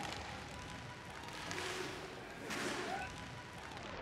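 Inline hockey arena ambience: a low crowd hubbub with two brief swishes about a second apart around the middle.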